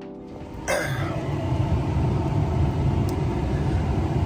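Background music ending in the first half second, then a steady low rumble inside a pickup truck's cab with the engine running.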